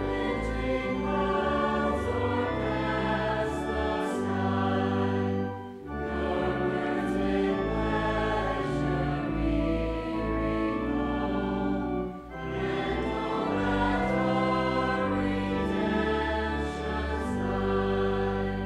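Voices singing an Advent hymn in slow, sustained notes, accompanied by organ, with brief pauses between lines about six and twelve seconds in.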